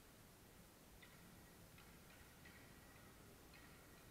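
Near silence, with faint distant clicks and short high squeaks from hockey play at the far end of the rink, starting about a second in.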